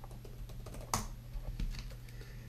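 A few separate sharp clicks of laptop keyboard keys being pressed, the loudest about a second in.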